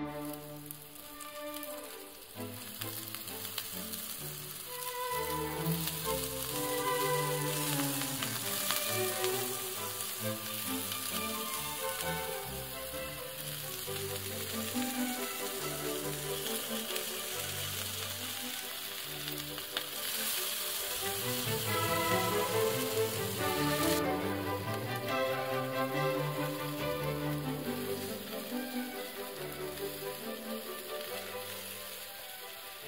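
Sausages sizzling as they fry on a hot ribbed grill pan, a steady hiss that grows a little louder past the middle. Background music plays throughout.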